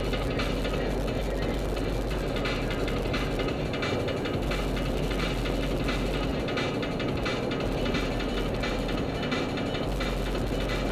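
Steady road and engine noise inside a car cabin at freeway speed, picked up by a dash-mounted camera microphone.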